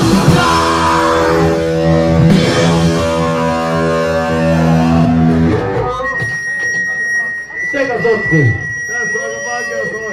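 Distorted electric guitar and band holding a final chord that rings and then cuts off about halfway through. After it come a steady high whine and voices.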